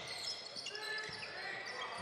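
Live basketball court sound: a ball dribbled on a hardwood floor, with brief high sneaker squeaks and a low arena hubbub.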